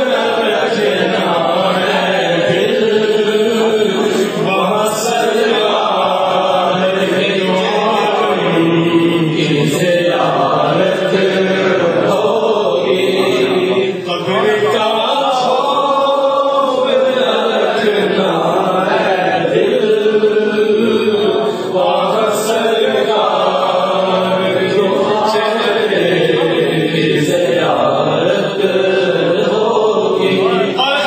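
Many men's voices chanting zikr together in unison, a devotional phrase repeated over and over in a steady, continuous flow.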